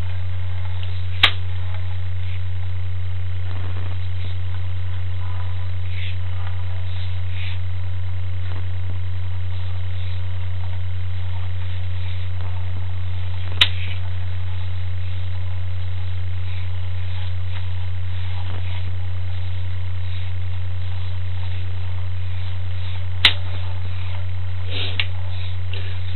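Steady loud electrical hum on the sewer inspection camera's audio, with three brief sharp clicks spaced about ten seconds apart.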